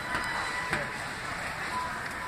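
Steady hiss of background noise in a large shop, with two light knocks in the first second from handling.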